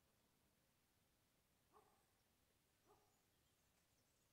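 Near silence: room tone, broken by two faint, short pitched sounds a little over a second apart near the middle.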